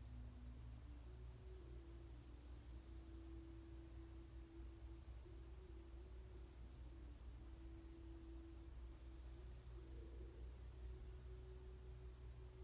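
Near silence: room tone with a low steady hum and a faint thin tone that shifts in pitch a few times.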